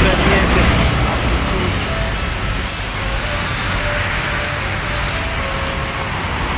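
Outdoor street ambience: a loud, steady rumble of road traffic noise with faint voices in the background.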